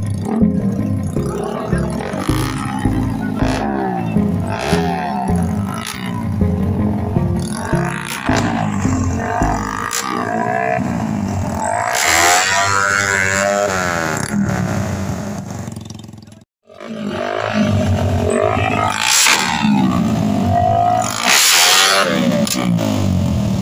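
Background music mixed with small racing motorcycles revving at a drag-race start, engine pitch climbing and falling; all sound cuts out briefly about sixteen seconds in.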